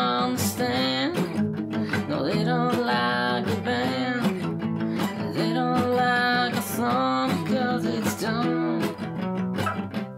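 Background music: a song carried by strummed acoustic guitar.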